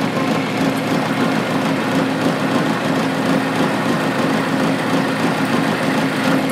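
Milling machine spindle motor running with a steady hum while a center drill cuts a starter hole into a metal bar held in the vise.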